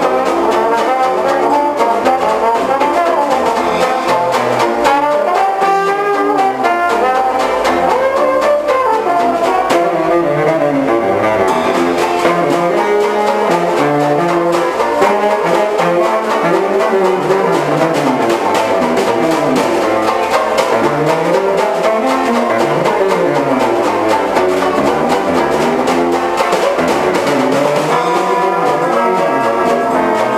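Dixieland marching band playing an upbeat tune on trumpet, trombone, bass saxophone, banjo and bass drum with cymbal, with a trombone solo in the first part.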